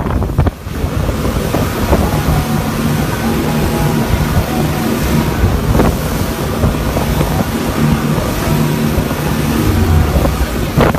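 Speedboat engine running at speed with a steady low hum, under rushing water and wind buffeting the microphone. One short thump about six seconds in.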